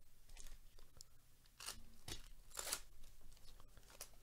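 Foil wrapper of a Topps Stadium Club baseball card pack being torn open by gloved hands: a few faint, short crinkling rips, the loudest about halfway through.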